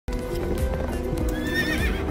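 Background music over a horse's hooves clip-clopping on a paved road.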